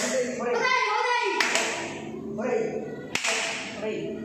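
People talking, broken by three sharp smacks spread through the stretch.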